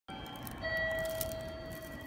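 Train-platform PA chime holding one steady electronic note from about half a second in, over the low rumble of the station platform.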